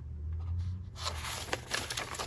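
Paper rustling and crinkling with small sharp crackles, starting about a second in, as a folded paper packing slip and envelope are handled on a plastic bubble mailer. A low hum lies underneath.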